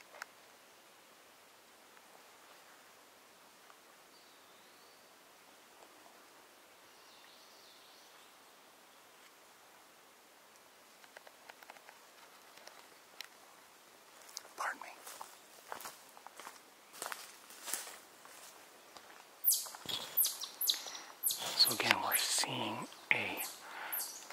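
Quiet woodland background with faint distant birdsong, then scattered clicks and rustling close to the microphone from about halfway. These become a loud, dense run of rustles and knocks in the last few seconds.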